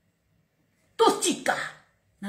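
A woman's voice: a short, loud two-syllable exclamation, each syllable falling in pitch, coming after about a second of near silence.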